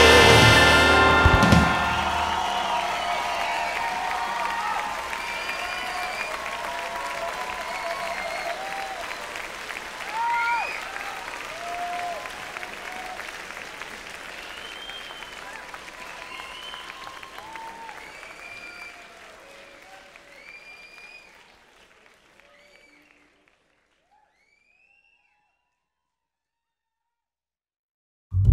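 A song ends on a final hit about a second and a half in. It is followed by crowd applause with scattered cheers and whistles that fade out slowly to silence near the end.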